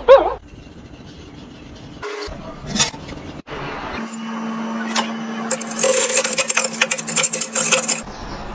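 Metal wire whisk clattering and scraping against a pot as it is worked around a boiled egg in water, over a steady low hum. The rattling grows dense and busy in the second half.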